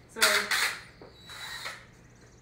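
Two short mechanical bursts from a cordless drill-driver at the pallet, the first about a quarter second in and the second past the middle with a thin high whine.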